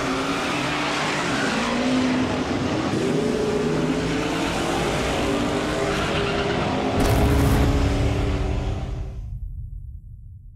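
Race car engines revving hard, their pitch rising and falling, with a sudden louder surge about seven seconds in, then fading out near the end.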